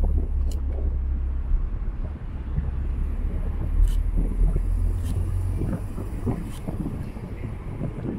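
Wind rumbling on the microphone of a camera riding on a moving car, over the car's road and engine noise; the rumble eases about five seconds in.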